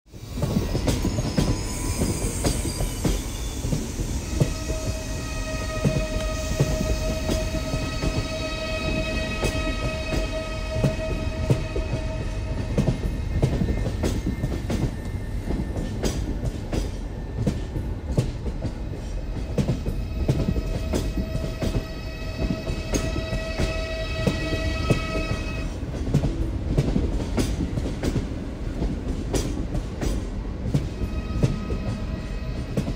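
A train running on rails: a steady rumble with frequent sharp clicks from the wheels. A steady pitched tone is held for several seconds, twice.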